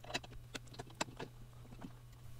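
Faint, scattered light clicks and ticks of metal parts being handled: the steel barrel of a Proxxon PD 250/E mini-lathe tailstock sliding in its bore and the handwheel being turned.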